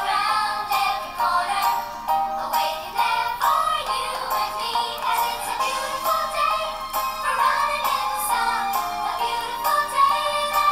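A good-morning song for young children: singing over an instrumental accompaniment.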